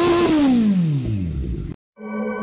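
Kawasaki Z900's inline-four engine revving through a Thai-made SC Project slip-on exhaust: held high briefly, then the revs fall smoothly back toward idle. The sound cuts off suddenly near the end.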